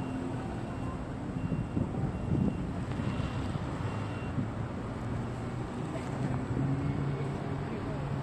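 Steady low rumble of car traffic and engines around a parking lot, with no single event standing out.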